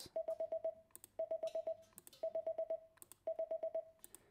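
Morse code for the number five: five short beeps (five dits) of one steady tone, heard four times in a row, about one group a second.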